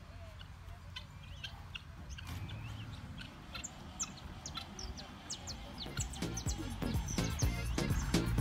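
Birds chirping in short, high, repeated calls. About six seconds in, background music with a steady beat comes in and grows louder.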